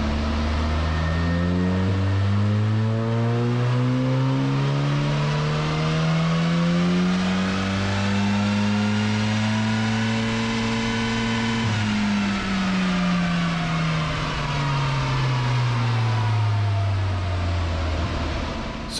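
Audi RS3 TCR's turbocharged 2.0 TFSI four-cylinder, fitted with a larger Garrett PowerMax turbo, making a full-throttle dyno pull. The revs climb steadily for about twelve seconds, then the throttle closes and the revs fall away smoothly.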